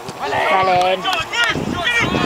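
Men's voices calling out on the touchline, with one drawn-out call held steady for about half a second near the start.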